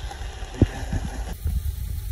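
Chopped onions sizzling in a stainless steel pot while a wooden spoon stirs them, with one sharp knock of the spoon about half a second in. The sizzle stops abruptly about a second and a half in, leaving a low steady rumble.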